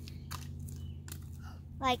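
A pause in a girl's speech: a low steady background hum with a few faint clicks, then her voice resumes near the end.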